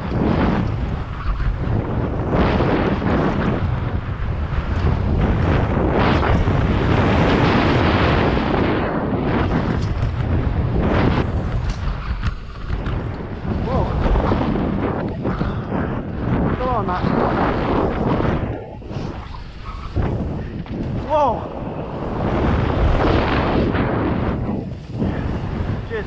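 Wind rushing over a helmet-mounted action camera's microphone as a mountain bike descends a dirt forest trail at speed, mixed with tyre and bike noise. It dips briefly a few times.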